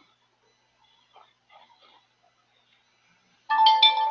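A short, clear ringing chime starts suddenly about three and a half seconds in and fades within about a second. Before it, near quiet with a few faint soft sounds.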